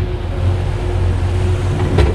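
A boat's engine running steadily at trolling speed: a low rumble with a constant hum over it, along with the wash of water past the hull.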